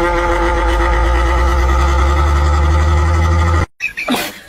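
Old pedestal fan running flat out: a loud steady drone with a humming pitch and a heavy low rumble, cutting off suddenly near the end.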